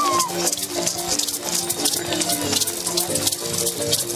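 Live processional dance music: a marimba melody of held, stepping notes with shaken rattles clicking densely over it. A short gliding whistle-like sound comes right at the start.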